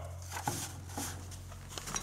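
Quiet room tone with a low steady hum and a few faint clicks.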